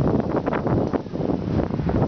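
Wind buffeting the microphone: a loud, irregular low rumble.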